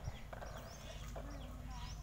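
Small birds chirping, short high falling chirps repeated two or three times a second, over faint background voices and a low rumble.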